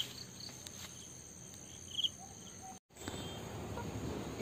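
Steady, faint high-pitched trilling of insects in garden vegetation, with a couple of short high chirps, one at the start and one about two seconds in.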